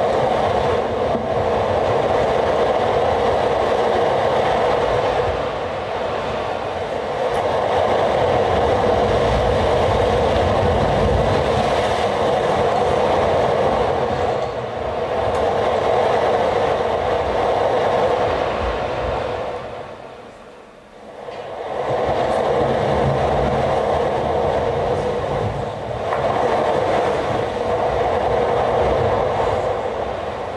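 Dense electronic noise drone from a live laptop set, played over the PA, heaviest in the middle range with a low rumble underneath. It dips away briefly about two-thirds of the way through, then swells back up.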